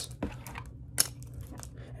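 Beard combs in a clear plastic sleeve and a wooden boar-bristle brush being handled: a few light clicks and crinkles of plastic, the sharpest about a second in.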